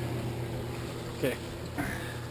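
Steady low hum of running reef-aquarium equipment, with a brief rustle near the end.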